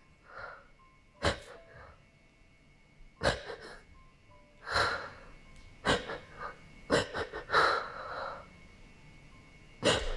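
A woman crying with her face in a pillow: about six sharp sniffs and shaky, sobbing breaths spaced a second or two apart.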